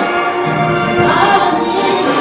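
Live gospel music: a male solo voice singing into a microphone, with choir voices and instruments behind him.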